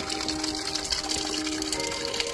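Spring water running and splashing over stones, with background music of steady held notes over it.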